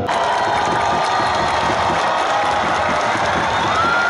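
Stadium football crowd cheering and shouting, a dense, steady noise. A single held high note rises above it near the end.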